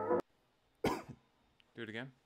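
A backing beat with a downward pitch drop cuts off just after the start. A man then coughs once, sharply, about a second in, and makes a short throaty vocal sound near the end.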